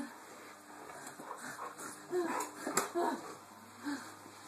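A Doberman whining in short, high whines in the second half, eager for a treat being held back from him.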